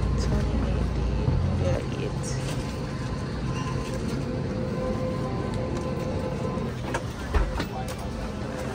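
Airliner cabin ambience during boarding: a steady ventilation hum that drops in level about two seconds in, with a faint steady whine over it, then a couple of short knocks near the end.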